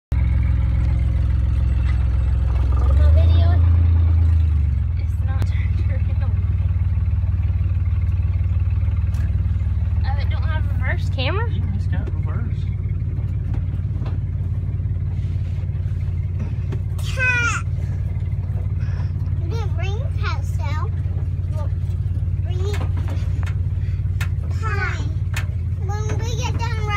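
The engine and drivetrain of a 1971 Jeep Jeepster Commando, a steady low drone heard from inside the cabin while driving. It swells briefly louder a few seconds in, and small children's voices come and go over it.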